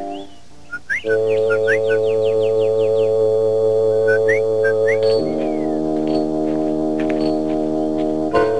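Cartoon score: held chords that enter about a second in and shift to a new chord about five seconds in, with short, repeated rising bird-like chirps played over them.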